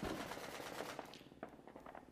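Rapid automatic gunfire: a fast, even string of shots for about a second, thinning into scattered single shots. It is heard faintly, as the soundtrack of video footage played back in a lecture room.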